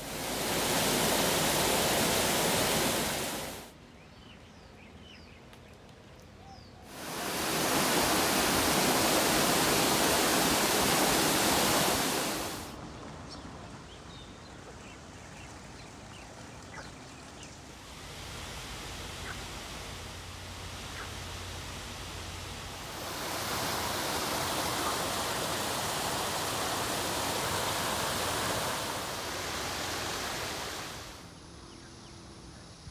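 Rushing water from a full reservoir overflowing down its dam and concrete spillway channels, in three loud stretches that cut in and out suddenly. Between them is a quieter outdoor hush with a few faint bird chirps.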